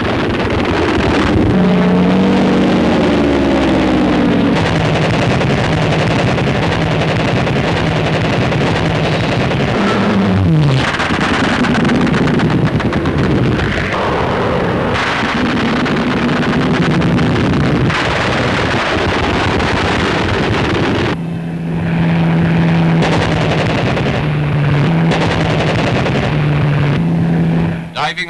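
Hawker Hurricane fighters' Rolls-Royce Merlin V12 engines running hard on low strafing passes, with one engine's pitch dropping as it passes about ten seconds in. Mixed in with the engines are bursts of the fighters' machine-gun and cannon fire with live ammunition.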